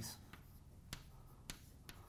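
Chalk tapping sharply on a blackboard three times as vertex dots are marked, faint in a quiet room.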